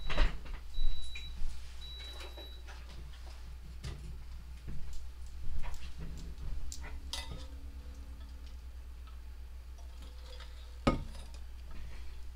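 Handling noise: scattered small clicks and knocks as things are picked up, moved and set down, with one louder knock about eleven seconds in, over a steady low hum. A faint high beep sounds a few times in the first two seconds.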